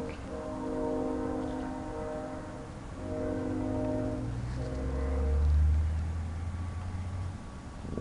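Two long, steady horn-like tones, each about two seconds, followed by a low rumble that swells and fades.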